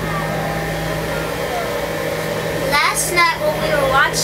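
Steady rushing wind-and-water noise with a constant low hum aboard a sailboat under way. Brief bits of a child's high voice come about three seconds in.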